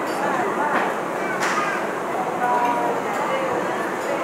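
Steady murmur of many voices chattering in a busy indoor public space, with one short sharp click about a second and a half in.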